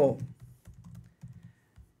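A few soft, irregular taps on a laptop keyboard, following the drawn-out end of a woman's spoken word.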